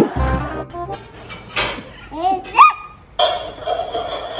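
High-pitched voice sounds over music: short squeals that rise in pitch about halfway through, the loudest at about two and a half seconds, then a long, held high note near the end.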